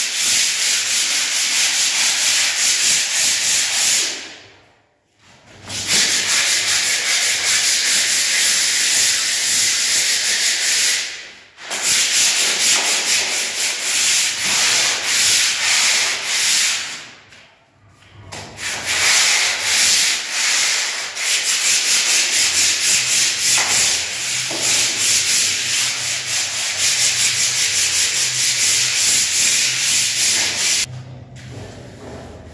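Cement-rendered wall being sanded by hand, rasping back-and-forth strokes at about three to four a second, stopping briefly three times. The rough render is being smoothed ahead of painting.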